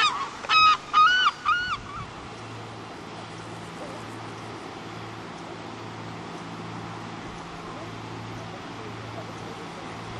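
A gull calling, a quick series of about five loud, arching cries in the first two seconds, then the calls stop and only a steady low background noise remains.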